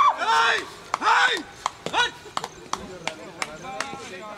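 Two drawn-out shouted calls from players, then a run of sharp, irregular knocks that fade near the end.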